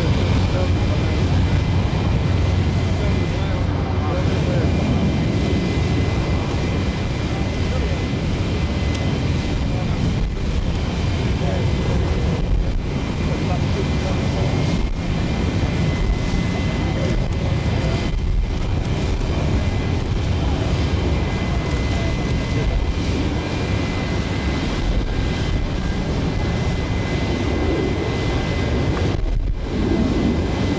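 Jet airliner noise running steadily at close range, a dense rumble with a constant high-pitched turbine whine.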